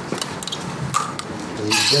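Hands working with instruments and wiring to fix sensors onto a body: a few light clicks, then near the end a sudden harsh rasping noise starts, with a word spoken over it.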